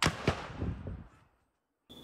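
Two gunshots about a third of a second apart, echoing, recorded on a phone during a police exchange of gunfire; the sound cuts out a little over a second in.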